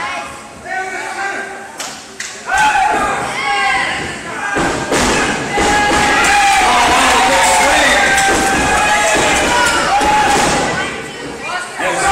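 Thuds of wrestlers' bodies hitting the canvas of a wrestling ring, with loud shouting voices over most of it, echoing in a large hall.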